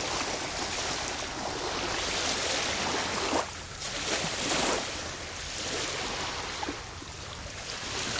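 Small sea waves washing at the shoreline with wind on the microphone, a steady noise; a dog splashes through the shallows at the start.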